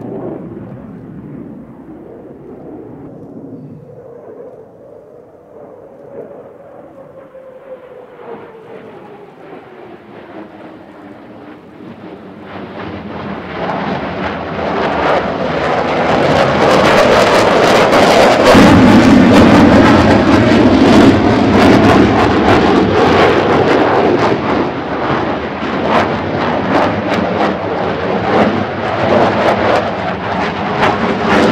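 Jet noise from an F-15J Eagle's twin turbofan engines in a display flight: faint at first with a slowly falling tone, then building from about twelve seconds in to a loud, crackling rumble as the fighter passes close, staying loud to the end.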